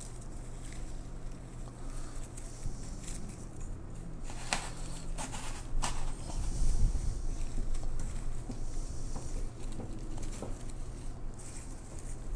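Rustling and crackling of silk lavender bushes as their stems and foliage are bent and worked into a metal basket, with a few sharper clicks and a low bump a little past the middle, over a steady low room hum.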